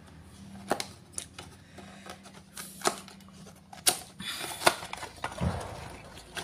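A cardboard box being opened by hand and a circuit board slid out of it: scattered clicks and taps, with a brief rustle of packaging about four and a half seconds in.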